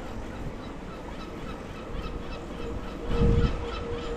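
Riding an electric bike on wet tarmac: wind buffeting the action camera's microphone over tyre noise, with a faint steady whine, and a loud low gust of wind noise about three seconds in.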